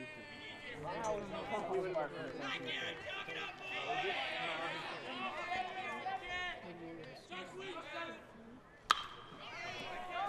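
Faint voices of the crowd and players chattering in the background, then a single sharp crack of a bat hitting a pitched baseball near the end.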